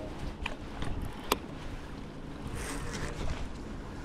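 Steady wind and water noise around a small open boat while a glide bait is cast and reeled in on a baitcasting rod, with two sharp clicks in the first second and a half.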